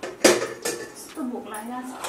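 Metal cookware clanking against a steel wok: one sharp clank about a quarter second in and a lighter one soon after. A woman's voice is heard briefly in the second half.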